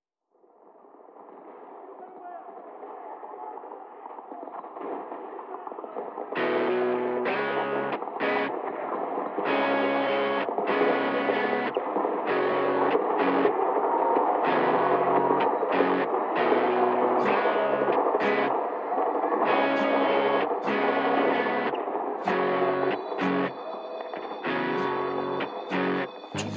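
Instrumental intro of a rock song. A noisy swell fades in from silence, then about six seconds in a band with distorted electric guitar comes in, playing chords in a stop-start rhythm.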